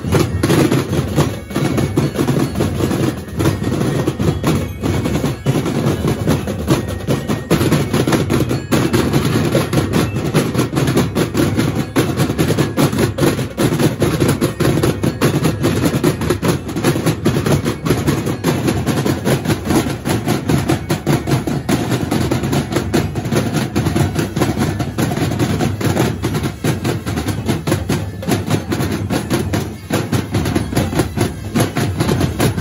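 Two street drum corps playing together on rows of stick-struck tom-style drums, a dense, fast, unbroken rhythm of many drummers at once.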